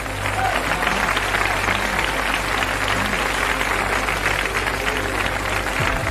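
Audience applauding after a punchline, the clapping swelling in just after the start and stopping just before the end, over a soft background music bed.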